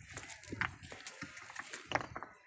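Loose stones knocking and clacking together on a rocky riverbed: a few sharp, irregular knocks, the loudest near the end.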